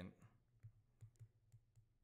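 Faint, scattered clicks and taps of a stylus on a tablet screen during handwriting, over near silence.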